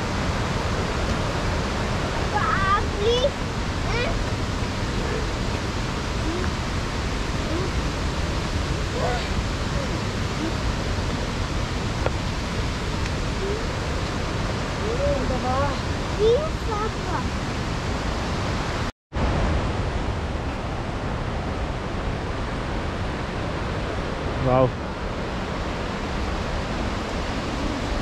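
Steady rushing of a waterfall. Its sound drops out for a split second about 19 seconds in.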